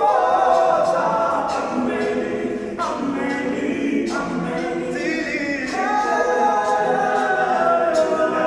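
A cappella group of male voices singing together in harmony, with no instruments.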